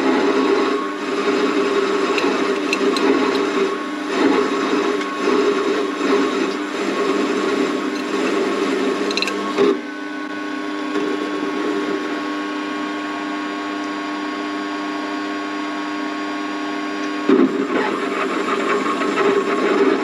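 Warco WM180 mini lathe running with a steady motor and gear whine while a CCGT carbide insert turns an aluminium workpiece. The rougher cutting noise drops away about ten seconds in, leaving the plain whine, and returns near the end.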